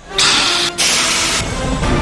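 Go Fast hydrogen-peroxide rocket-belt jetpack firing its thrust at lift-off: a loud, sudden jet hiss in two bursts with a brief gap between them, easing after about a second and a half.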